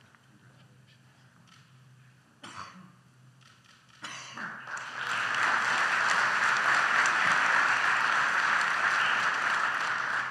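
Audience applause that starts about four seconds in, swells and holds steady. Before it, quiet room tone with one short sound about two and a half seconds in.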